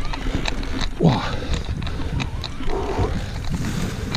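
Electric mountain bike riding over rocky, stony ground: a steady low rumble with irregular rattling clicks from the bike jolting over the stones. A rider's falling "ouh" exclamation comes about a second in.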